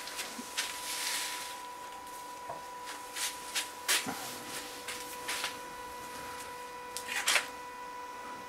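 Workshop handling noises: a scattering of light clicks and knocks, about a dozen, with firmer knocks about four seconds in and near the end, over a faint steady hum.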